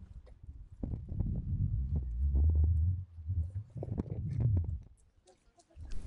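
Wind buffeting the microphone on an open beach: a low rumble that rises and falls in gusts, with scattered faint clicks. It dies away shortly before the end.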